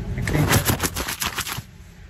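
A rapid run of sharp crackling clicks, about ten a second, lasting about a second and a half before dying away.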